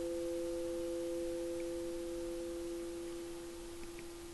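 Two held pure tones about a fifth apart, played as healing sounds, ringing steadily and slowly fading.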